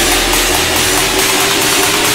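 Riddim dubstep track in a build-up: a dense, hissing wash of noise and synth over a held tone. The deep bass falls away a little over a second in.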